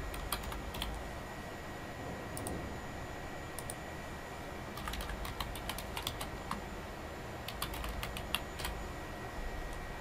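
Computer keyboard typing in short bursts of keystrokes with pauses between, fairly faint.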